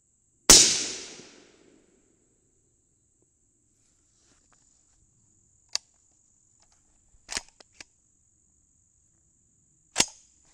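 A single shot from an AR-15 chambered in 22 Nosler, about half a second in, with its report echoing away over about a second. Afterwards come a few sharp metallic clicks, one near the middle and a short cluster a little later: the action is being worked by hand, because the gas system is shut off and does not cycle the rifle.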